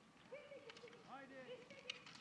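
Faint, distant voices calling out, over near silence.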